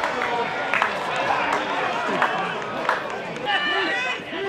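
Scattered shouts and calls from players and a small crowd at a football match, with a few sharp knocks among them.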